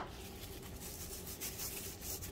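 A cardboard knife box knocks down onto the mat right at the start, then faint rustling and rubbing as hands handle packaging.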